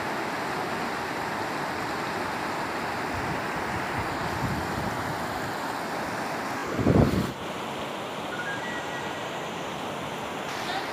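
Steady rush of a fast, turbulent river running over boulders. A single loud low thump about seven seconds in, like a gust or knock on the microphone.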